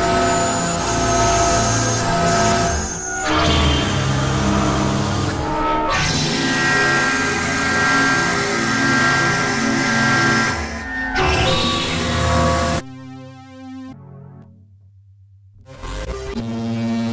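Experimental electronic synthesizer music: dense layers of sustained synth tones and drones, with brief dips a few times. About three seconds before the end it drops suddenly to a much quieter, thinner tone, then comes back up.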